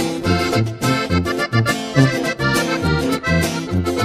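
Sierreño band playing an instrumental passage: accordion carrying the melody over a tuba bass line and strummed acoustic guitar, in a steady dance beat.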